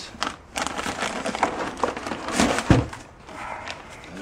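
Plastic bag and foam packing rustling and crinkling as the wrapped unit is handled and lifted out of a cardboard box, with scattered clicks and one low thump about two-thirds of the way through.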